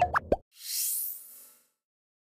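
Electronic end-card jingle: a quick run of bubbly pops with sliding pitches in the first half-second, then a high, shimmering whoosh that rises and fades away.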